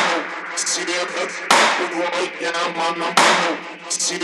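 Three sharp knocks about a second and a half apart, each with a short ringing tail.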